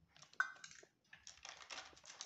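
Thin plastic sheet from a cut milk packet crinkling and crackling as it is folded over and peeled back from flattened dough, in two bursts with a short pause between.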